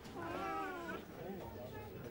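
An infant crying: one wavering cry in the first second, then weaker fussing, with voices around it.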